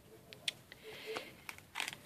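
Faint rustling and a few light clicks of paper and cardstock being handled as a page of a handmade mini album is moved and opened.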